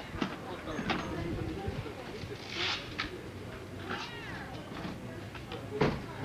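Skis, poles and ski boots clacking and knocking as they are handled and packed, with several sharp knocks and the loudest one just before the end. Background voices, and a brief wavering high-pitched call about four seconds in.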